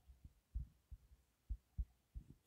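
Faint, dull low thuds, four or so at irregular spacing, from a stylus tapping on a drawing tablet while writing.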